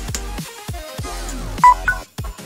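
Electronic background music with a steady beat; about one and a half seconds in, a Samsung smartphone gives a short two-note beep, louder than the music, as it detects the charger: the repaired USB port is supplying power.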